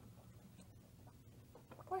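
Faint room tone with a low steady hum and a few soft ticks; a woman's voice begins just at the end.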